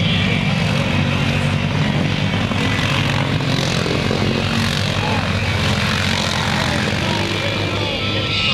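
Several ATV engines running together at a steady loud pitch as the machines plough through a deep mud-water pit, with the churned mud splashing, over the voices of the crowd.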